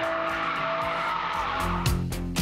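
Cadillac Catera's rear tyres squealing steadily as the car spins donuts, fading out near the end as music with a beat comes in.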